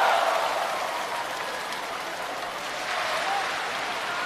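Large theatre audience applauding, loudest at the start and easing to a steady level after about a second.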